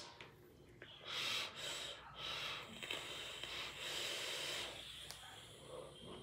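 A long, quiet draw on a mechanical mod vape with a rebuildable dripping atomizer: air hissing in through the atomizer as the coil fires, lasting about four seconds.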